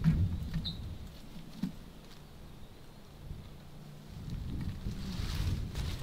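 Quiet outdoor ambience: a low rumble with faint rustling, and one short high chirp about a second in.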